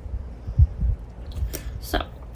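Washi tape being laid across a paper planner page on a tabletop and pressed down by hand: a few dull thumps, the loudest about half a second in, then two short scratchy noises near the end.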